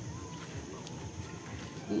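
Quiet outdoor background with faint distant voices and soft, irregular footsteps on a paved path. A voice starts right at the end.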